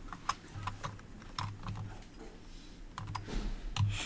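Keystrokes on a computer keyboard: irregular quick taps, sparser for a moment in the middle, as code is typed into an editor.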